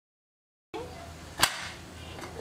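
Pressure cooker whistle weight handled on its vent: one sharp metal clink about one and a half seconds in, then a lighter click, over a low steady noise.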